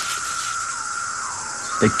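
Chorus of male 17-year periodical cicadas calling to attract females: a steady, high droning buzz.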